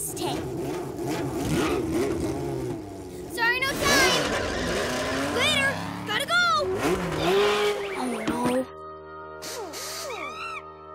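Animated cartoon soundtrack: background music mixed with cartoon car sound effects and warbling, squeaky effects. It thins out to music alone near the end.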